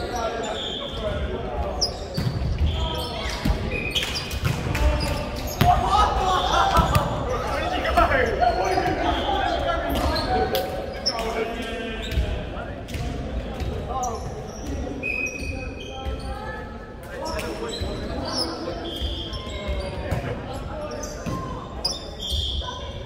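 Indoor volleyball on a hardwood court in a large echoing hall: the ball thuds, sneakers give short high squeaks, and players' shouts are loudest around six to ten seconds in.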